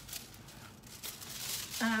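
Soft crinkling and rustling of a packet of rub-on foil sheets being picked up and handled, a light papery hiss that grows a little stronger about a second in. A woman's voice comes in at the very end.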